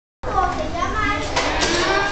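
A group of children's voices chattering and calling out over one another.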